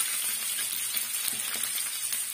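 Oil sizzling steadily in a metal kadai as food fries, with a few light scrapes and taps from a metal spatula stirring it.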